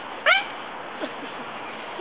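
A short, high-pitched vocal call about a quarter second in, its pitch rising and then falling, followed by a faint brief call about a second in.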